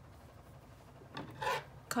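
Yarn rubbing against a crochet hook and the crocheted fabric as a stitch is pulled through: a short scratchy rubbing about a second in, after a quiet moment.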